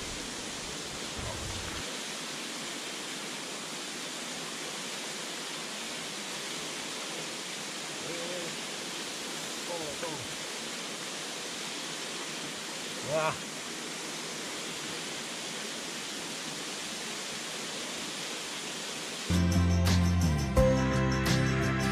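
Steady rush of a small waterfall, a drainage outflow spilling over a rock face into a shallow stream. Music comes in loudly about a second before the end.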